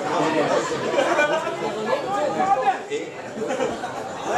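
Spectators at a boxing match talking and calling out over one another, a steady babble of many overlapping voices.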